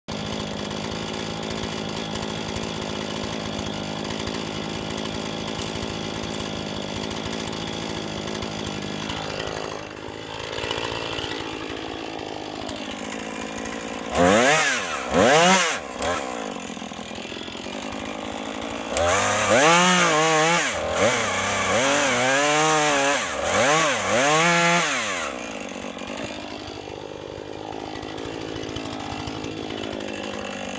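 Chainsaw idling steadily, then revved in two short bursts about halfway through. After that comes a longer spell of repeated revs, rising and falling for about six seconds, before it drops back to idle.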